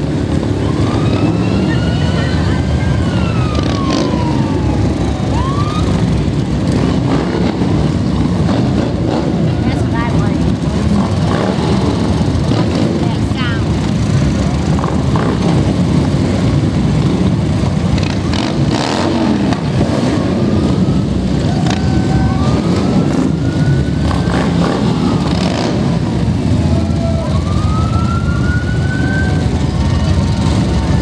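Parade vehicles give a steady low rumble, with short rising and falling siren whoops now and then.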